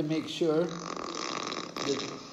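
A man's voice making brief wordless vocal sounds that bend in pitch, followed by about a second of a steady breathy sound.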